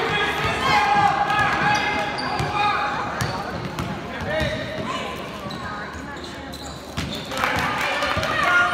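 A basketball bouncing on a hardwood gym floor in short knocks during a youth game, under the voices of spectators and players calling out. The voices are loudest in the first few seconds, ease off past the middle and pick up again near the end.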